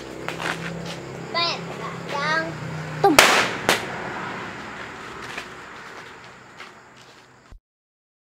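Firecrackers going off: two loud bangs about half a second apart around three seconds in, among smaller pops, with short calls from people's voices before them. The sound cuts off suddenly near the end.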